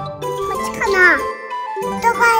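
Light children's background music with tinkling chime notes, and a high, cute voice exclamation falling in pitch about a second in; the music stops briefly just after it.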